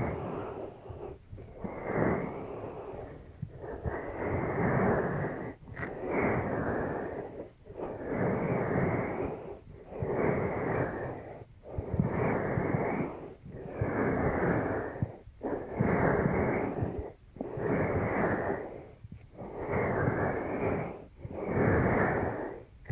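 Hands cupping and releasing over the silicone ears of a binaural microphone, making a muffled rushing swell about every one and a half to two seconds, with a short hush between swells.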